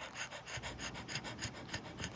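French bulldog panting quickly and evenly, about seven short breaths a second, while nursing her newborn puppies.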